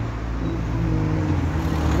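A steady low rumble, like a running vehicle engine, with a faint voice in the background about halfway through.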